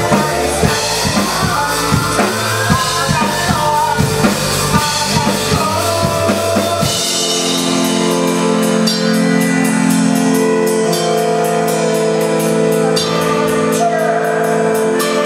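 Live band music, drums and bass driving a steady beat. About halfway through, the drums and bass drop out, leaving sustained held chords over a light, steady ticking rhythm up high.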